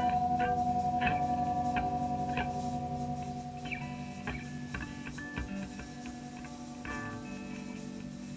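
Electric guitars in a free improvised jam: a chord rings on and slowly fades while single picked notes sound over it, and a fresh chord is struck near the end.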